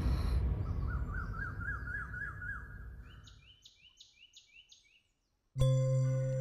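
Background music fades out while birds chirp: first a warbling run of repeated notes, then five quick high chirps. After a brief silence, soft new music with held tones starts about five and a half seconds in.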